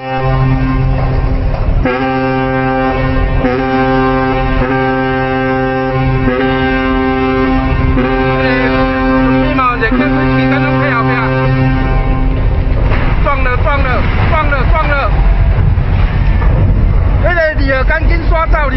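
A ship's horn sounds one long, steady, deep blast of about twelve seconds as a large ship bears down on the quay, a warning of the coming collision. Excited voices shout over its end and after it stops, over a low rumble.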